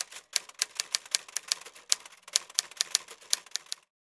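Typewriter keys clacking in a rapid, uneven run, about eight strikes a second. The sound effect keeps pace with on-screen text being typed out letter by letter, and stops shortly before the end.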